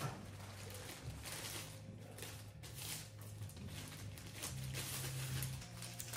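Faint handling sounds of craft materials on a table, a plastic-bagged bundle of wooden skewers being set down and foil-wrapped chocolates picked up, over a low steady hum.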